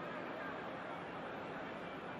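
Steady murmur of a football stadium crowd, many distant voices blending together.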